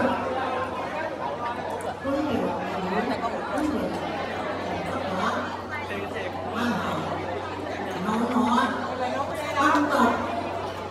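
Chatter of many guests talking at once in a large, echoing banquet hall, with a steady low hum underneath.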